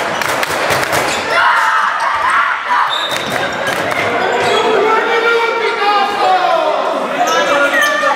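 Handball bouncing and slapping on a sports-hall floor in the first second or so, then a short steady referee's whistle about three seconds in, followed by several voices calling out in the echoing hall.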